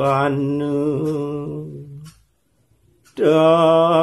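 A solo voice chanting Balinese kekawin, Old Javanese sung poetry, in the Swandewi metre, on long held notes with small wavering turns. The phrase fades out about two seconds in, and after a pause of about a second the next phrase begins.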